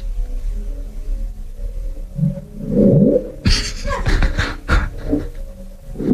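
Playback of the 1997 'Bloop' underwater ocean recording: low moaning tones with a rising sweep about two and a half seconds in, followed by a short burst of broader noise.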